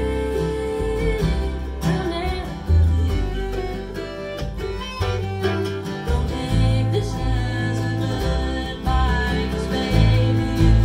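Acoustic string band playing live: two acoustic guitars, a mandolin, a fiddle and an upright bass, with a woman singing lead.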